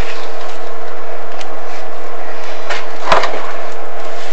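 Steady noise with a faint constant hum as a video inspection camera is worked down a chimney flue, with a short knock a little after three seconds, like the camera head bumping the flue wall.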